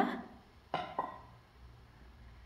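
Two light clinks, about a quarter second apart, of a metal measuring cup knocking against a glass mixing bowl while scooping flour, each with a short ring.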